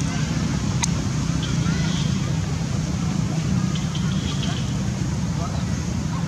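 A steady low rumble, with faint indistinct voices in the background and one sharp click a little under a second in.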